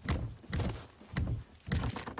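Wooden coffin bouncing end over end along a road, landing in a series of heavy thuds, about two a second.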